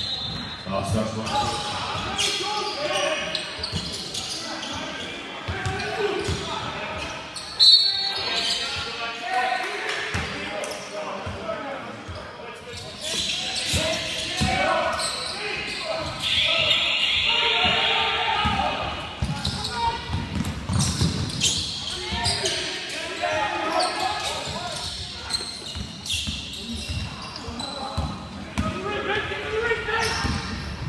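Live basketball game sound in a gym: the ball bouncing on the hardwood court and players' and spectators' voices echoing in the hall, with a sharp bang about eight seconds in.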